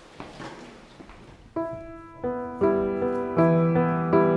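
Grand piano starting to play after a quiet second and a half: a few single notes, then fuller chords over a held low note.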